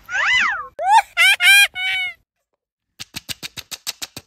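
Four short, high-pitched meow-like cries in the first half, each rising and then falling in pitch. Near the end comes a quick run of about nine sharp plastic clicks.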